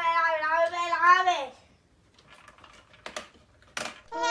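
A child's drawn-out, wavering crying wail for about the first second and a half, followed by two sharp knocks near the end.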